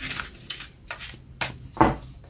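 A deck of tarot cards shuffled by hand: a few separate sharp snaps and taps of the cards, the loudest near the end.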